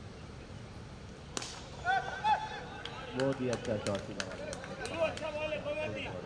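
Cricket bat striking the ball with a single sharp crack about a second and a half in, followed by players' shouts.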